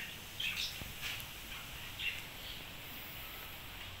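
A few faint, short bird chirps over a low, steady background hum.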